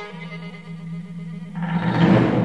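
Contemporary chamber-orchestra music from a violin concerto for solo violin and fifteen instruments: held chords over a steady low note, then a loud, noisy swell about one and a half seconds in.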